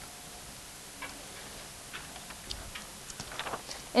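Faint, irregular light taps and clicks of a stylus on an interactive whiteboard over quiet room hiss, coming a little more often near the end.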